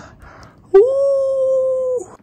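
A man's long, high, steady whine of pain, held through closed lips, as a continuous passive motion machine forces his stiff post-surgery knee towards 90 degrees of bend. It starts with a short upward slide less than a second in and holds one pitch for over a second before stopping near the end.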